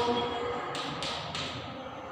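Three short taps, about a third of a second apart, in a room.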